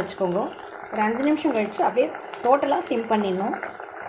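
A woman speaking over the faint crackle and bubbling of fresh herb leaves frying in coconut oil. The crackle comes from the leaves' moisture hitting the hot oil.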